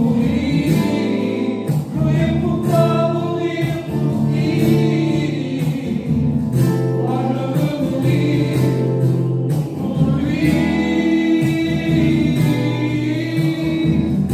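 A hymn sung by several voices together in long, held phrases, men's voices to the fore.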